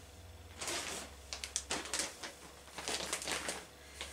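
Plastic bag of synthetic pillow stuffing rustling and crinkling in irregular bursts as hands reach into it, over a steady low hum.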